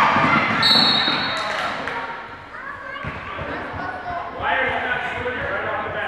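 Basketball game in a gymnasium: a ball bouncing on the court and players' feet moving, with voices calling out in the echoing hall. A brief high-pitched tone sounds about half a second in, and the calls pick up again about four and a half seconds in.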